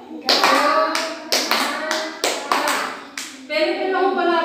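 Hands clapping in quick short groups, a woman's and children's voices mixed in, as a word is clapped out in a classroom sound-awareness game.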